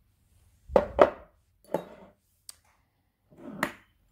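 Glass perfume bottles being handled and set down on a hard surface: a few knocks and clinks, two sharp ones close together about a second in, then lighter ones.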